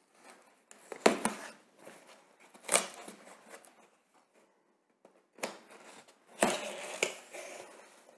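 A taped cardboard box being handled and its lid pulled open: several short scraping and rustling noises, the longest one near the end.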